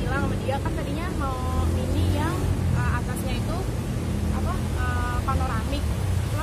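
Speech, apparently a woman talking, over a steady low rumble, likely from vehicle traffic or an engine.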